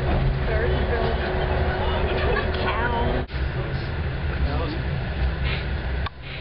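Steady low rumble of a moving passenger train heard from inside the carriage, with faint indistinct voices over it. The sound cuts off abruptly about three seconds in and picks up again at once.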